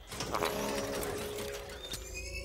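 Mechanical whirring of a robot's jointed arms and servos, a film sound effect that starts suddenly just after the beginning, over a low steady hum.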